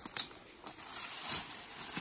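A few faint clicks and rustles as a herbicide injector is worked at a freshly drilled stem.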